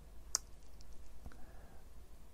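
A sharp single click about a third of a second in, followed by a few faint ticks and another soft click, over a low steady hum.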